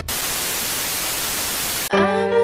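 A burst of steady static hiss, like a detuned TV's white noise, cutting in abruptly and stopping suddenly just before the end: a static sound effect used as a transition between clips.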